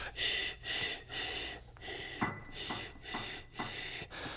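A man whispering an 'ee' vowel in a string of short breathy puffs, each with a faint thin whistle-like pitch. He is tuning the vowel shape by whisper to find its resonant pitch before adding voice.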